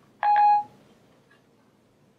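Apple Siri chime on an iPhone 4S: a single short electronic beep about a quarter second in, lasting about half a second, as Siri stops listening after a spoken request. After it there is only faint room tone.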